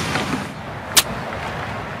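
A single sharp crack of a golf club striking the ball about a second in, over steady outdoor background noise.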